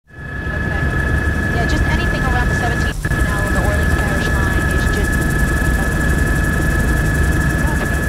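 Helicopter running, heard from aboard: a steady low rotor and engine rumble with a high, steady turbine whine and faint voices under it. The sound drops out for an instant about three seconds in.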